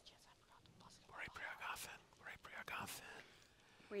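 Faint, soft speech, like a few whispered words, in short snatches between near-silent pauses.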